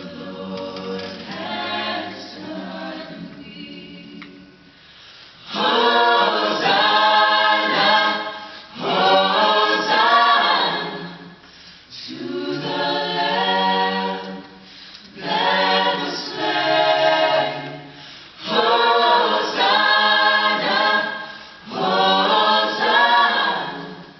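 Mixed choir singing a cappella: a soft passage at first, then from about five seconds in, loud full phrases of two to three seconds each with short breaks between.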